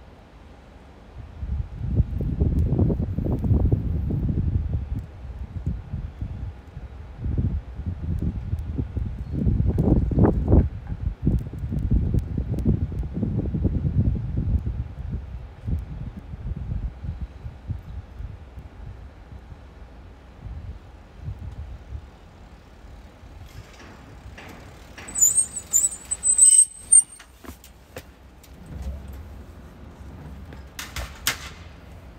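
Road traffic passing on a street: two long low rumbles in the first half, then quieter, with a brief high-pitched squeal and a few clicks around 25 seconds in.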